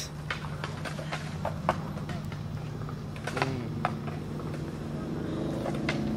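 Scattered sharp clacks and knocks over a steady low hum, with a faint voice after the middle and again near the end.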